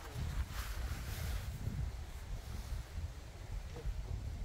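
Wind rumbling on the microphone, with faint rustling and soft footsteps in the first second or so.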